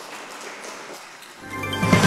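Audience applause, low and even, then theme music fades in about one and a half seconds in and becomes loud by the end.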